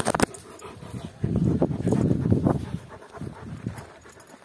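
A Kangal dog nosing the phone: a knock right at the start, then about a second and a half of rough, low breathing and fur rubbing close against the microphone, fading near the end.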